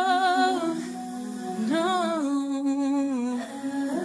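A wordless hummed vocal melody in a slow ballad, with a held note and then a phrase that rises and falls, over a soft sustained backing tone.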